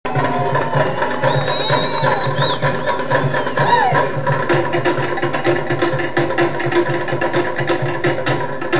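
Live Polynesian dance music for an aparima hula, with fast, steady drumming and wooden-sounding strikes. Voices sound over the beat during the first half.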